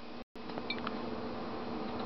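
A few faint clinks of a metal spoon against a stainless skillet as the bean and salsa mix is stirred, over a steady low room hum. The audio cuts out completely for an instant about a quarter second in.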